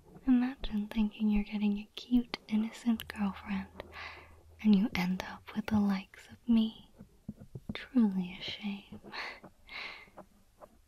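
A woman's soft, close voice murmuring and whispering in short pitched notes that the recogniser could not make into words, with small sharp clicks and scratches close to the microphone between them.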